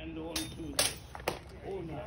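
Steel training longswords clashing: three sharp blade strikes in quick succession, about half a second apart.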